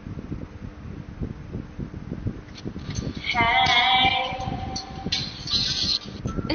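A woman singing unaccompanied over a live-stream call, holding one long note with vibrato about halfway through.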